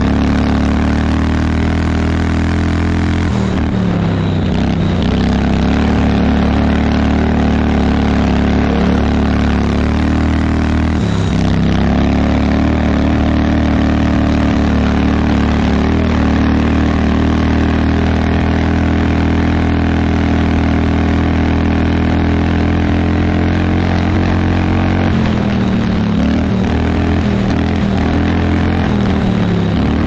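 Vintage garden tractor's small engine running under load as it drives across snow. The engine speed sags and recovers about three and a half seconds in and about eleven seconds in, then sags again for a few seconds near the end.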